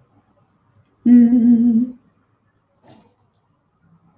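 A woman humming one steady note for about a second, starting about a second in.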